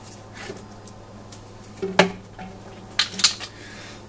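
A few sharp metal clinks against a stainless steel saucepan holding mineral oil, as objects in and around the pot are handled: the loudest about halfway through, two more close together near the end. Under them runs a faint steady hum.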